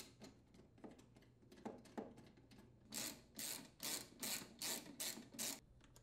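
Socket ratchet clicking as it unthreads a fuel tank mounting bolt: a few scattered clicks at first, then about halfway through an even run of ratcheting strokes, roughly two or three a second.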